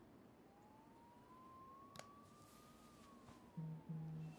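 Near silence: faint background hiss with a faint tone that slowly rises and then falls, a single sharp click about halfway, and a brief low hum near the end.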